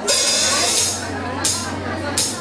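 Two sudden bursts of high hiss: the first, the loudest, lasts almost a second, and a shorter one comes near the end, over a steady low hum.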